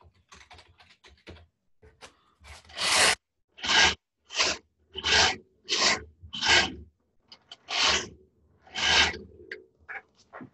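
A series of about eight rough rustling, rasping strokes in a steady rhythm, roughly one every two-thirds of a second, starting about two and a half seconds in, after some fainter scratchy ticks.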